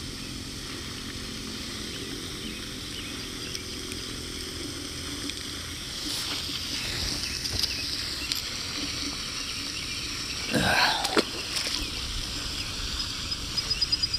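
Steady outdoor pond background, a low wash of water noise, with a few faint handling clicks as a bluegill is unhooked. A short, louder sound comes about ten and a half seconds in.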